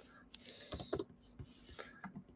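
Typing on a computer keyboard: faint, irregular key clicks, several a second.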